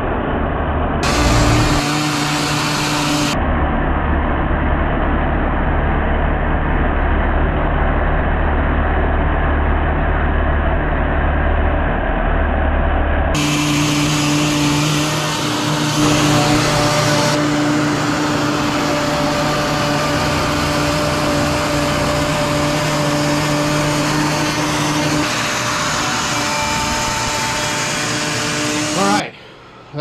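Large Makita router with a surfacing (planer) bit running steadily as it is pushed across a walnut slab on a router planing sled, flattening the rough-sawn surface. It is loud, with a steady whine, shifts abruptly several times, and cuts off suddenly near the end.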